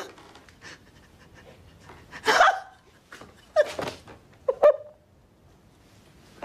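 A woman's emotional gasping breaths and short voiced sobs, three of them about a second apart.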